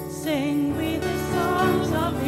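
Church praise band playing a slow Christmas worship song, with a sung melody line over sustained chords.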